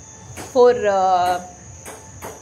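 A steady, high-pitched chorus of crickets.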